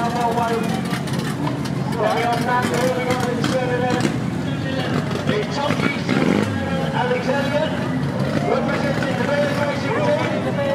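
Banger race cars' engines running as the cars roll slowly past, with a person's voice talking continuously over them.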